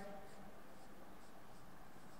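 Faint strokes of a marker writing on a whiteboard, a few soft short squeaks over quiet room tone.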